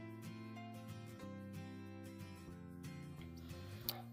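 Quiet background music with steady held notes and soft plucked-sounding notes.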